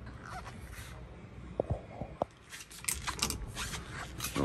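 A quiet car cabin with two light clicks in the middle and a short patch of rubbing and scraping near the end, from handling inside the car.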